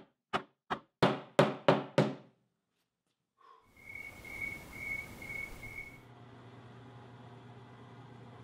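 Mallet tapping glued wooden inlay pieces down into their routed pockets: about seven quick knocks, roughly three a second, stopping after about two seconds. After a short silence comes a hiss with a pulsing high whistle, then a low steady hum.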